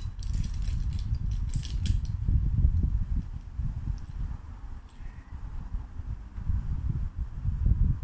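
Low, irregular rumbling on the microphone, with a quick run of small clicks in the first two seconds.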